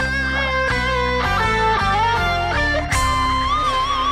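Instrumental music: a guitar plays a lead melody with wavering held notes over a steady bass backing, with no singing.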